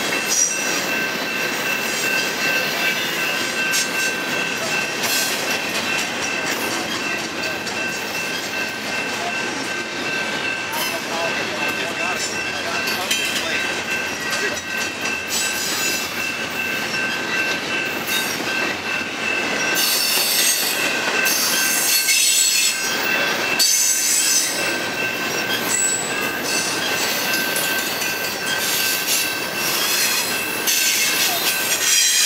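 Double-stack intermodal freight cars rolling past: steady rumble and rattle of steel wheels on the rail, with a thin, steady high-pitched squeal from the wheels. About twenty seconds in, a few seconds of louder clanking and rattling.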